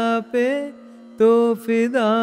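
A solo voice singing a line of a Hindi film song in raga Puriya Dhanashree, with long held notes and slight ornamental wavers in pitch; the singing breaks off briefly about halfway and then resumes.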